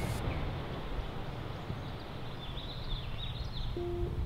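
Steady outdoor background noise with a low rumble, and a few faint high bird chirps about two and a half to three and a half seconds in.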